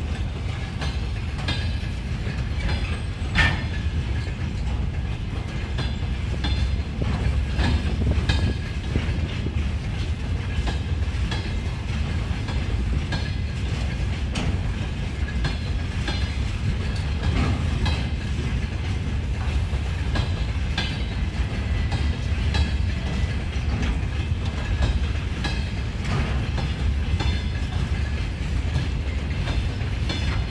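Freight train of open gondola wagons rolling past close by: a steady low rumble of wheels on rail with a run of clicks and knocks as the wheels cross rail joints. A sharper knock comes about three and a half seconds in.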